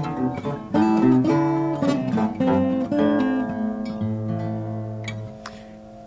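Acoustic guitars playing West African desert blues fingerstyle, plucked melody over a held bass note, fading out as the song ends.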